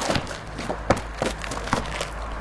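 A series of short, sharp thumps and taps at uneven intervals, about eight in two seconds.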